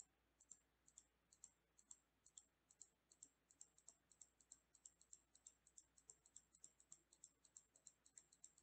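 Faint computer mouse button clicked over and over, about two to three clicks a second, coming a little faster toward the end.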